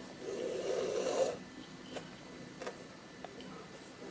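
Embroidery thread drawn through fabric stretched taut in an embroidery hoop: a rasping rub lasting about a second, then a few faint ticks.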